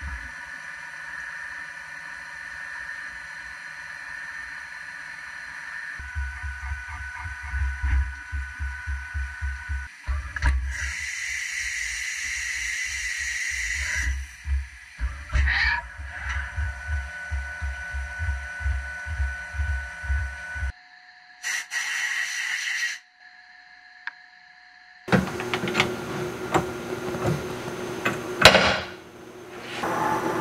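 Haas CNC mill slotting aluminium with a one-inch end mill at 15,000 RPM under flood coolant: steady spindle and cutting tones, joined about six seconds in by a pulsing low rumble. The sound changes abruptly several times in the last third.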